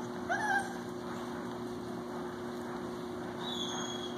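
Puppies playing rough: one gives a short yelp about a third of a second in, and a thin, high whine comes near the end, over a steady low hum.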